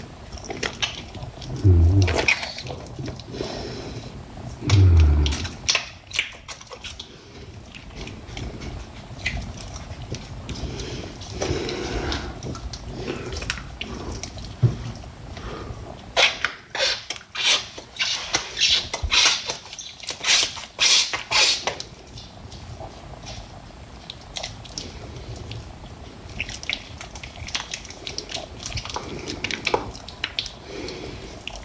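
Soapy, lathered hands rubbing, wringing and squishing together close to the microphone. Two low thumps come about two and five seconds in, and there is a quick run of sharper wet squelches in the middle of the stretch.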